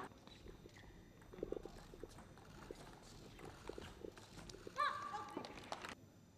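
Table tennis play: scattered light clicks of the celluloid-type ball on bats and table, with a short high squeak that rises then holds about five seconds in.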